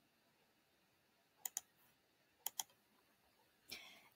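Near silence broken by two quick double clicks about a second apart, from a computer mouse or keyboard used to advance the presentation slides, then a short breath near the end.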